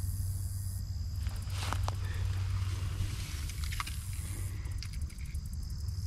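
Steady high-pitched buzzing of field insects, with a few faint rustles and clicks as dry weeds are handled, over a low steady rumble.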